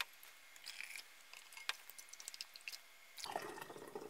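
Faint clinks of a ladle in a pot of hot sugar syrup. About three seconds in, the syrup starts trickling through a plastic canning funnel into a glass mason jar.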